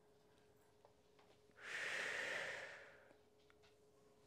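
One audible exhale by a person, a smooth rush of breath about a second and a half long that begins about a second and a half in and fades out.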